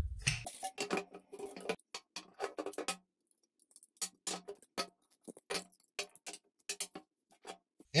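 Unglued PVC pipes and fittings being pulled apart and set down on a wooden tabletop: a scattered run of light plastic clicks and hollow knocks, with a brief pause about three seconds in.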